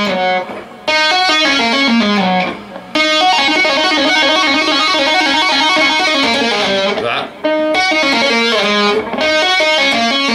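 Electric guitar played with two-handed tapping: quick runs of tapped notes pulled off to lower frets, ending in a slide down. The lick repeats, with short breaks about half a second in, near three seconds and about seven seconds in.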